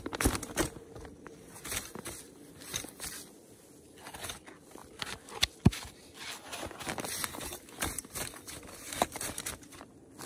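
Crunching and rustling as a person in snowshoes shifts about on packed snow and handles a fabric folding camp chair, with scattered small knocks and one sharp knock a little past halfway.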